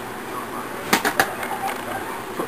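Cordless drill spinning a GM 10SI alternator at just under 1,000 rpm, a steady whir from the drill motor and alternator, with a few sharp clicks about a second in. At this speed the alternator is putting out charging voltage.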